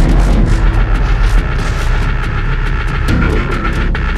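Heavy deathstep-style dubstep music: a deep sub-bass under a long sustained high synth note and quick, regular percussion hits.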